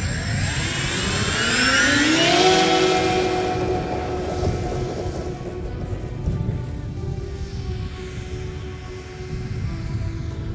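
Radio-controlled scale model C-130 Hercules with four propeller motors. The motors rise in pitch together over the first two and a half seconds as they throttle up for take-off, then run at a steady high pitch.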